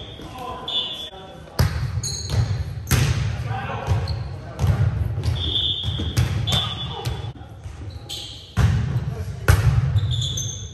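Indoor volleyball play in a large gym: several sharp smacks of the ball being hit, each echoing in the hall, with short high squeaks of sneakers on the hardwood floor between them.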